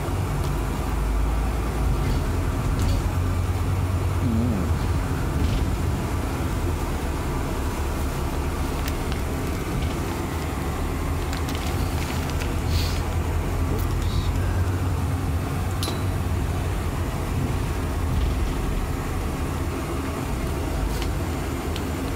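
Inside a moving double-decker bus: steady low engine and road rumble, with a few faint clicks along the way.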